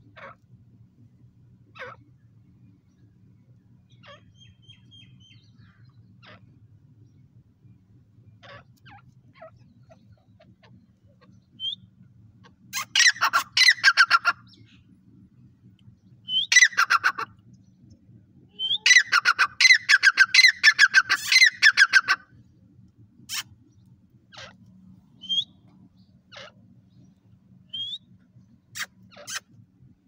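Grey francolin calling: about halfway through come three loud bursts of rapid, harsh repeated notes, the last about three seconds long, each led in by a short rising chirp. Scattered single clicks and notes come before and after, over a faint steady low hum.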